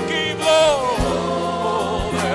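Gospel worship music: voices singing with vibrato over sustained bass and keyboard notes, with one held sung note sliding downward about half a second in.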